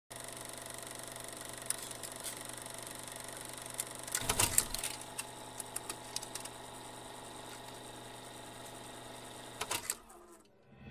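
A steady mechanical hum made of several even tones, broken by scattered sharp clicks and crackles. The clicks come in a denser cluster about four seconds in and a few more just before the end.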